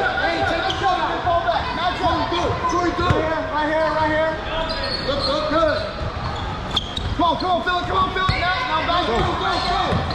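A basketball bouncing on a hardwood gym floor, amid many overlapping voices of players and spectators in a large, echoing gym, with a couple of sharper knocks about three and seven seconds in.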